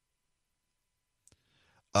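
Near silence, broken by one faint click a little over a second in; right at the end a man's voice starts up loudly.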